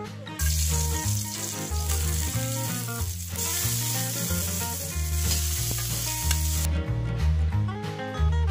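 Hot oil sizzling in an aluminium wok as chopped onion, garlic and tomato fry. The sizzle starts suddenly about half a second in and drops away near the end, over background music.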